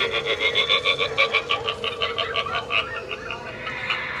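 Animatronic scarecrow prop's sound effect: a rapid, raspy pulsing croak of about ten pulses a second that fades away about three seconds in.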